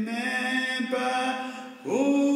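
Slow, chant-like music: a voice or voices holding long, steady notes, moving to a new pitch about once a second, with a brief dip near the end.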